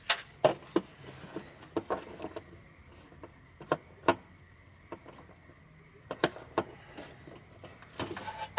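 Scattered sharp clicks and knocks of hands and a tool working down inside a car's engine bay, about a dozen irregular hits with short pauses between them.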